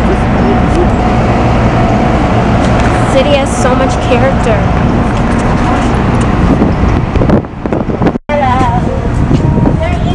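Busy city street sound: traffic and indistinct passers-by voices under a loud, steady low rumble. The sound drops out sharply for a moment about eight seconds in.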